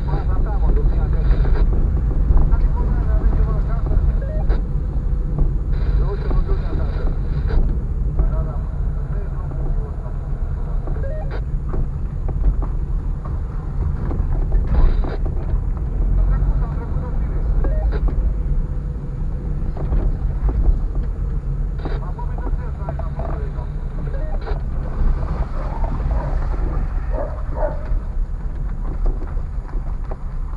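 Car driving slowly over a rough, broken concrete road, heard from inside the cabin: a steady low engine and tyre rumble with occasional knocks from bumps.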